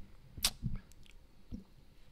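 A single short hissing whoosh about half a second in, followed by a couple of faint knocks.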